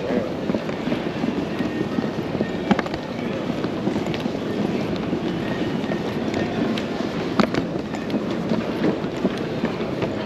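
Ambience of a large, echoing airport terminal hall: a steady hum of indistinct voices and ventilation, with a few sharp clicks.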